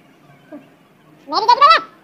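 A single goat-like bleat about halfway through: one wavering call of about half a second that rises in pitch and then drops away.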